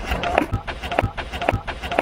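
Skateboards rolling on concrete, with a quick, irregular string of sharp clicks and knocks from the boards and wheels.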